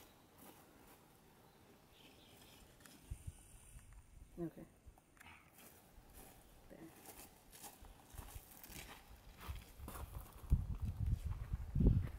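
Faint scuffs and knocks of steps on dry, stony ground, with a low rumble building near the end.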